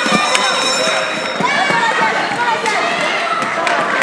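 Children's voices and shouts over a steady clatter of play in a roller hockey game: skate wheels on the hard floor, and a sharp clack of a stick hit just after the start.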